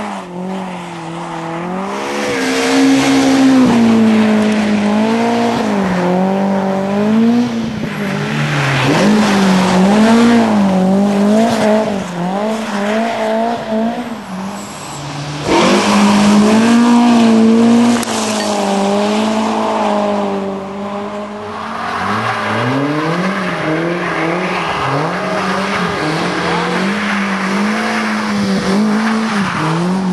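BMW E30 M3 rally car's four-cylinder engine revving hard, its pitch rising and falling again and again through gear changes and throttle lifts. A sudden louder stretch sits about halfway through.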